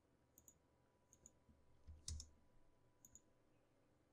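Near silence with a few faint computer mouse and keyboard clicks scattered through it, one a little louder with a soft thud about two seconds in.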